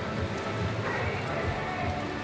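Hooves of a reining horse beating on arena dirt as it spins, a quick run of low thuds, under a murmur of voices and background music.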